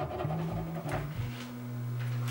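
Background music: low notes that change pitch, then settle into one held low bass note about a second in, with a faint tap just before it.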